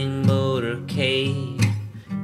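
A man singing a held, melodic line over a strummed acoustic guitar.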